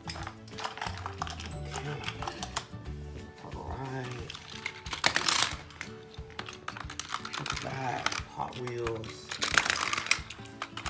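Background music, over light clicking and rattling of plastic and die-cast toy cars being set into a plastic Hot Wheels car transporter, with a louder rattle about five seconds in.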